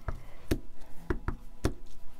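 Clear acrylic stamp block being tapped onto an ink pad and pressed onto paper labels on a craft mat: a run of about six sharp, irregular knocks in two seconds.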